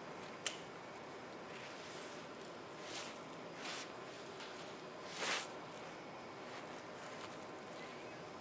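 Gloved hands handling the groin sheath and surgical drapes: a sharp click about half a second in, then a few short rustles around three and five seconds in, over a steady room hiss.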